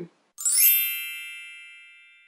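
A bright chime sound effect: a quick shimmering rise of high ringing tones that then rings on and fades away over about a second and a half.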